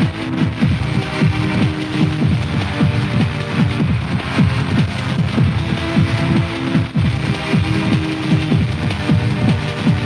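Old-school hardcore/jungle rave music from a DJ set: fast breakbeat drums with deep bass notes that slide down in pitch several times a second.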